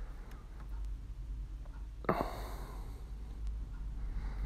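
A man breathing out audibly, a single short sigh about two seconds in, over a steady low hum, with a few faint ticks.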